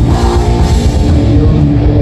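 Live rock band playing loud and without a break: electric guitars, bass guitar and a drum kit with cymbals.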